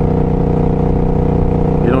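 Suzuki C50T Boulevard's V-twin engine running steadily at cruising speed, a constant even hum that holds the same pitch throughout.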